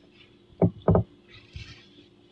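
Two short knocks about a third of a second apart, then a fainter one.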